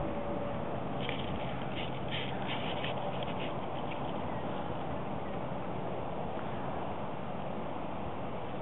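Steady wind rushing over the microphone, with a quick run of short high-pitched sounds from about a second in, lasting some two seconds.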